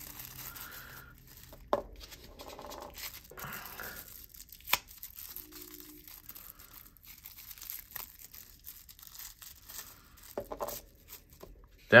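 Thin white wrapping crinkling and tearing as small metal plates are unwrapped by hand, with a couple of sharp clicks, about two seconds in and near five seconds in.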